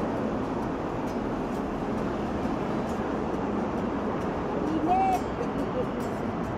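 Steady city street noise from traffic, with indistinct voices mixed in. A short arched tone sounds about five seconds in.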